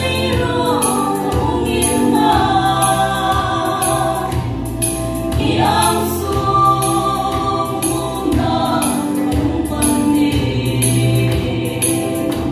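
Female vocal group singing a Hmar gospel song in close harmony, several sustained voices together, over a steady beat and low bass accompaniment.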